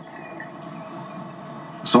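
A pause in speech filled with low, steady background noise, with a man's voice coming back near the end.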